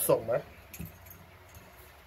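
A man's voice speaking briefly at the start, then a pause with faint room noise and one soft click.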